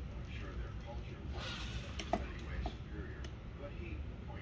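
Indistinct voices murmuring in a room over a steady low hum, with a brief hiss about one and a half seconds in and two sharp clicks, the louder one just after two seconds.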